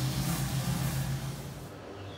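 A steady low mechanical hum with a hiss over it, which drops away suddenly near the end.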